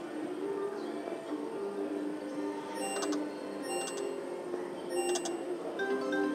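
Slot machine bonus music during free spins: a running melody of short mallet-like notes, with bright ringing chimes about halfway through and again near the end.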